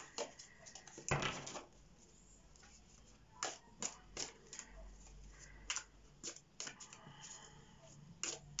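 A pack of small round cardboard oracle cards being shuffled by hand: faint, irregular clicks and slides of card on card, with a longer rustle about a second in.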